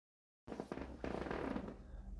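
Silence for about half a second, then quiet crackling and clicking over a low hum: handling and room noise from a handheld camera being carried indoors.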